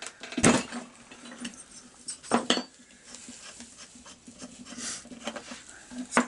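Metal clinks and knocks of a spark plug socket wrench and other hand tools being handled and set down on a workbench while the chainsaw's spark plug is taken out. Two sharper clanks stand out, one about half a second in and one about two and a half seconds in, with lighter ticks between.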